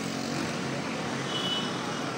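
Street traffic noise with motorcycle engines running. A brief high tone sounds about one and a half seconds in.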